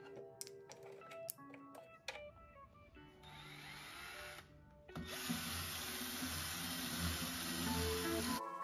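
Cordless drill with a round scrub-brush attachment whirring: a short run from about three seconds in while the brush is dipped in soapy water, a brief stop, then a longer, louder run from about five seconds in as the brush scrubs a wooden drawer front.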